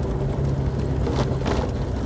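Jeep driving along a dirt road: a steady engine drone with tyre and road noise, and two brief rattles a little past halfway.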